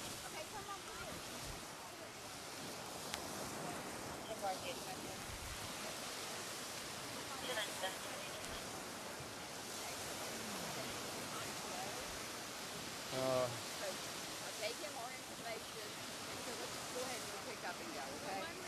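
Steady wash of surf breaking on the shore, mixed with wind, under faint distant voices. A short, louder burst of a voice comes about two-thirds of the way through.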